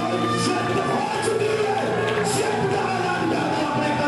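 Amplified worship music: a man singing into a microphone over steady instrumental backing with light percussion.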